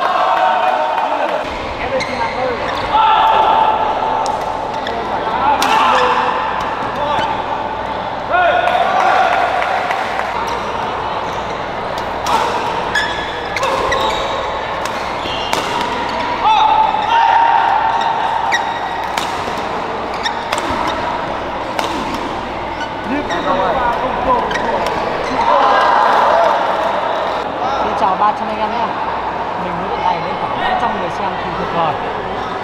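Badminton rackets striking the shuttlecock again and again in doubles rallies, the hits coming thickest in the middle, over background voices from spectators and players.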